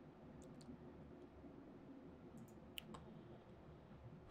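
Near silence: low room tone with a few faint clicks from working a computer, a couple about half a second in and a small cluster near three seconds in.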